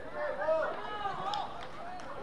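Distant voices shouting short calls across a football pitch, several overlapping shouts, loudest about half a second in.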